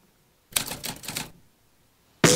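Typewriter sound effect: a quick run of key clacks lasting about a second, starting half a second in.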